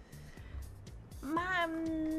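A woman's voice holding a long, hesitating "Ma..." (Italian "well/but") that starts about a second in and slowly falls in pitch, over faint background music.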